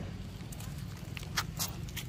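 Footsteps on dry leaves and gravel: a few short crackles and taps in the second half, over a low steady rumble.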